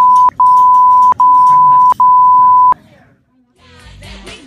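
Censor bleep: a steady high beep laid over a woman's swearing, in four back-to-back stretches with a click at each break, ending under three seconds in. Music starts near the end.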